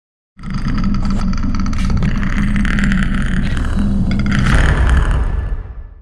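Car engine running steadily with a low hum, fading out over the last second.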